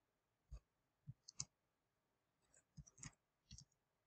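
Faint computer keyboard keystrokes: about seven separate clicks at an uneven pace, a couple of them in quick pairs.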